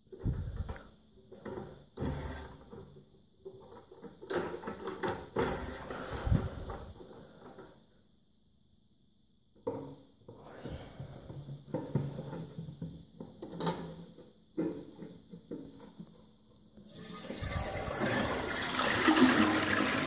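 Repeated clicks and knocks of a toilet cistern's plastic push-button and lid being pressed and worked by hand, as the flush sticks. About three seconds before the end the toilet flushes, with a loud rush of water into the bowl.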